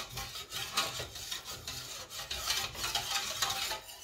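Wire whisk stirring a roux-and-chicken-stock white sauce as it thickens in a stainless steel saucepan, the wires scraping and clicking against the metal in quick repeated strokes.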